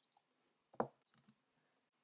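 A few faint, sharp clicks, the clearest just before a second in, against near silence.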